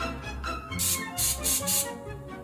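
Olive-oil cooking spray hissing from an aerosol can into a frying pan in three short bursts in the second half, over background music with a steady beat.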